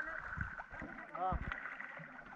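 A wooden paddle stroking through the sea beside a small outrigger canoe, water splashing and lapping at the hull. A voice calls out briefly a little past a second in.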